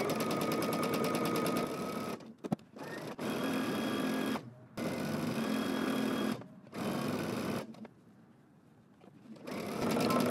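Electric home sewing machine stitching a seam in about four runs, stopping briefly between them, with a longer quiet pause near the end before it starts up again.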